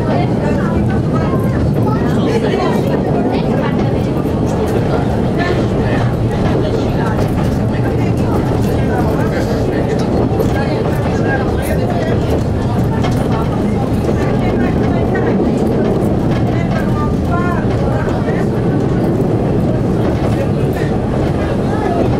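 CP 9500-series diesel railcar running steadily along the track, its engine and wheel-on-rail noise heard from the cab, with voices murmuring underneath.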